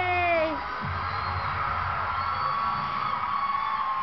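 A held sung note ends about half a second in, then a studio audience cheers and whoops over music, played through a television.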